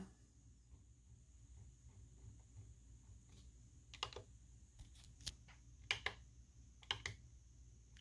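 Faint clicks from the buttons and scroll wheel of a FrSky Taranis Q X7 radio transmitter being pressed to page through its menus. The key beeps are switched off. There are a few short, sharp clicks in the second half, several in quick pairs.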